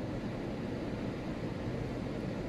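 Steady wind and surf noise, even throughout, with no distinct sounds standing out.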